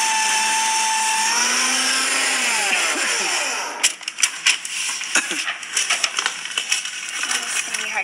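Electric paper shredder running: a steady motor whine that sags in pitch as it draws the paper in, followed by irregular crackling and clicking as the paper is cut.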